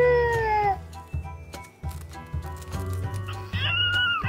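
Baby Alive Real as Can Be doll's electronic baby voice fussing: a long held cry that tails off under a second in, then a shorter, higher whimper near the end. Background music with a steady low beat plays throughout.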